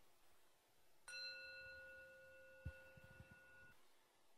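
A small meditation bell struck once, ringing faintly with a clear, steady tone that fades out over about two and a half seconds, followed by a soft knock.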